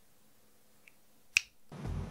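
Near-silent room tone through the condenser microphone, broken by a single sharp click about one and a half seconds in; a hiss of background noise comes up near the end.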